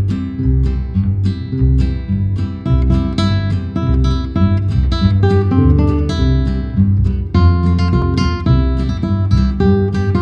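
Nylon-string classical guitar strummed and plucked in an instrumental piece, over a plucked upright bass line.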